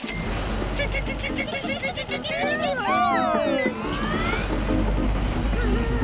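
Cartoon massage couch switched on by a smart-home tablet, vibrating with a steady low rumble that grows stronger about four seconds in. Over it, the characters' voices waver and glide as they are shaken, with background music.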